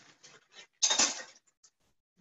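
A few light clicks, then a short scraping clatter about a second in: a metal spoon against the pan as a spoonful of stew is scooped out.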